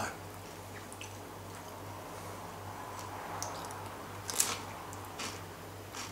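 Faint chewing of a mouthful of tortilla chip and creamy salsa dip, with a few brief crunches in the second half, over a steady low room hum.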